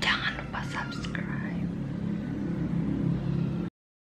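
A woman's short whispered words in the first second and a half, over a steady low hum; the sound cuts off abruptly shortly before the end.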